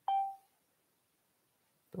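A single short electronic beep, starting sharply and dying away within half a second.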